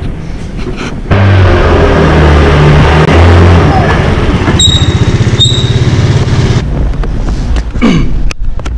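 A Kymco motor scooter's small engine comes in loud about a second in and runs as the scooter is ridden off, its note wavering as it pulls away. It falls away near the end. Two short high beeps come in the middle.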